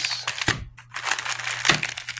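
Plastic snack wrappers and bread bag crinkling and rustling as they are handled, with a couple of sharper crackles.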